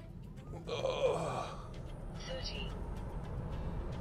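Cabin noise of a dual-motor Tesla Model 3 Long Range launching at full throttle from a standstill to 60 mph: low road and tyre rumble building steadily with speed. About a second in there is a short, breathy exclamation from the driver.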